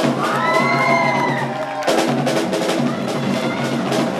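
Rock band playing live through stage amplifiers: electric guitar with a long bent note over drums and cymbals, and a fuller, lower chord coming in about two seconds in.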